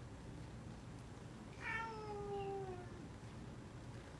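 A single drawn-out, meow-like call about a second long, starting high and gliding down in pitch, over faint room noise.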